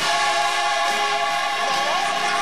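Mass gospel choir singing, holding a sustained chord that swells in right at the start.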